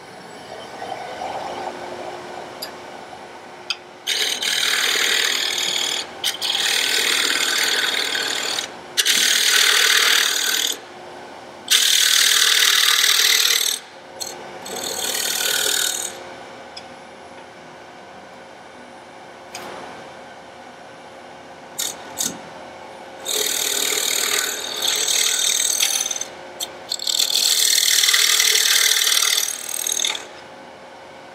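Hand-held turning tool cutting into the face of a lid blank spinning on a wood lathe, a coarse scraping hiss in about seven passes of one to three seconds each, cutting the recess for an inlay ring. A faint steady lathe hum runs under it and is heard alone for several seconds in the middle.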